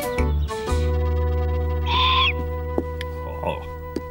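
Cartoon background music holding long low notes, with a short bird call about halfway through and a shorter, falling call near the end.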